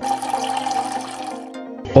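Sound effect of liquid pouring and fizzing, about a second and a half long, then fading out, over soft background music.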